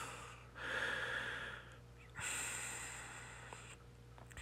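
A man breathing: two long, soft breaths, one after the other.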